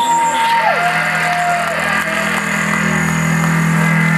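Live rock band playing, with electric bass: a steady low note is held throughout. Over it, a high note bends up, holds, then slides down and settles on a lower note in the first two seconds.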